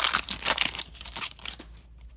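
Wrapper of a 2011-12 SP Authentic hockey card pack crinkling and tearing as it is ripped open: a quick run of crackles that thins out and fades toward the end.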